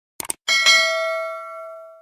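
Subscribe-button sound effect: a quick mouse click, then a bright notification-bell ding struck twice in quick succession that rings on and fades away over about a second and a half.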